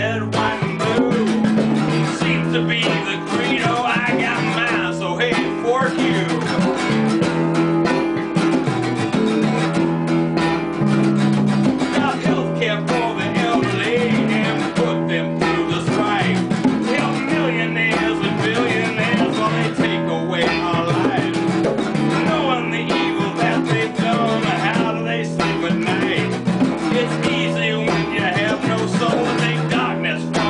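A small band playing a song: a strummed steel-string acoustic guitar, an electric guitar and a djembe hand drum, at a steady level throughout.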